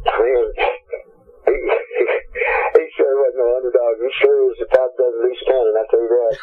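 Speech only: a person talking, with a brief pause about a second in, the voice thin and narrow-band like a telephone line.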